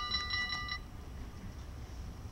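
A rapidly pulsing ringing signal of several pitches, about six strokes a second, which cuts off just under a second in, leaving a low outdoor rumble.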